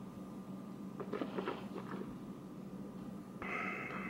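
A man sipping beer from a glass: a few soft swallows about a second in, then a breath out through the nose near the end.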